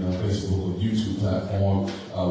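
Only speech: a man talking into a handheld microphone.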